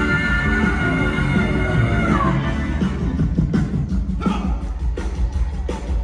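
Live rock-and-roll band playing: a long held high note slides down about two seconds in, then the drums and band carry on.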